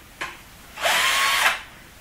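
Cordless drill motor running briefly in reverse, its whine rising in pitch and then holding for under a second, while channel-lock pliers grip the keyless chuck to loosen an over-tightened chuck and free a stuck drill bit.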